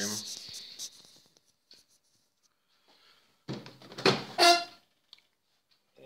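Microwave oven door being opened: sharp clacks of the latch and door about three and a half seconds in, followed straight after by a brief pitched sound, the loudest moment.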